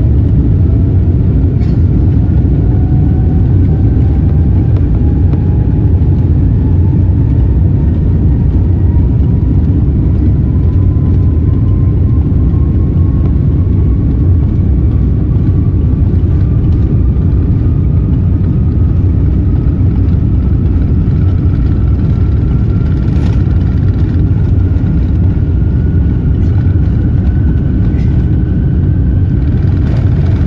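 Boeing 787-10 jet engines at takeoff thrust, heard from inside the cabin during the takeoff roll: a loud steady roar with a thin whine climbing slowly in pitch as the airliner gathers speed down the runway.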